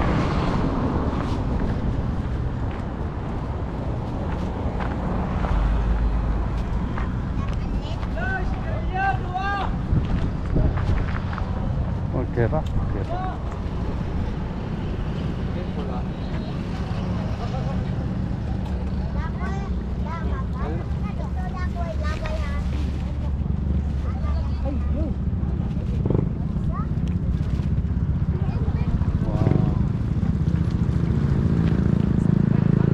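Steady low outdoor rumble at the seaside, with high-pitched voices calling out now and then from people in the water, a few times in the middle and again near the end.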